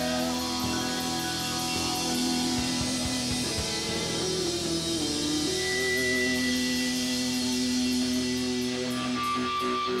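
Live rock band playing an instrumental passage: drums, strummed acoustic guitar and guitar holding long sustained notes, one bending up in pitch about halfway through.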